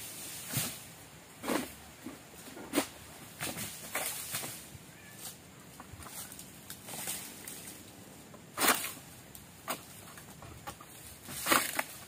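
Egrek, a long-poled sickle, cutting at the base of an oil palm frond: irregular short, sharp scraping strokes a second or so apart.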